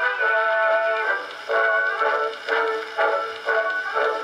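Edison Blue Amberol cylinder record playing on an Edison cylinder phonograph with a built-in horn. The music is thin and without deep bass, as an acoustic cylinder recording sounds, and has a steady beat of about two notes a second.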